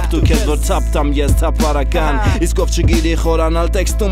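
Armenian rap song: a male voice rapping over a hip-hop beat with a deep, steady bass and regular drum hits.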